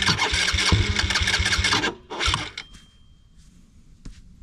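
Electric starter cranking the Can-Am Renegade 110 XXC's 110 cc engine, turning it over in even pulses without it catching: a hard start on a brand-new machine. The cranking stops just before two seconds in, a short second crank follows, and then it goes quiet.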